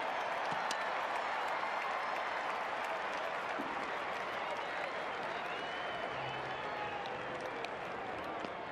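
Ballpark crowd cheering and applauding a home-team base hit, swelling at the start and slowly easing off.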